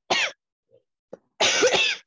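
A person coughing: a short cough right at the start, then a longer, rougher cough about a second and a half in.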